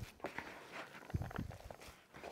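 Gloved hands kneading a ground beef and shredded cheese mixture in a bowl: faint, irregular squishing with a few soft thuds against the bowl.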